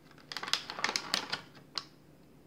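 A clear plastic bag of plastic HeroClix miniatures being handled: a quick run of irregular crinkles and clicks lasting about a second and a half.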